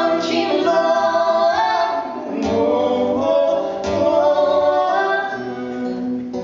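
Live duet of a woman and a man singing in harmony, sustained sung notes over a strummed steel-string acoustic guitar.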